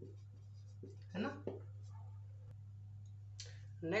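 Marker pen writing on a whiteboard, faint scratchy strokes, with a single sharp click about two and a half seconds in. A steady low hum runs underneath.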